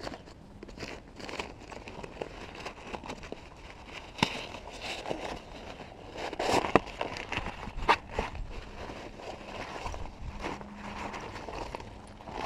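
Fabric rustling and crinkling as a front pack is pulled out of its drawstring stuff sack, with a few sharp clicks scattered through it.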